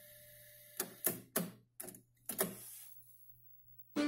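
Trio KX-800 cassette deck's transport keys and mechanism clicking, a handful of sharp clicks in the first two and a half seconds over a faint steady hum, as the deck is switched between modes with the music stopped.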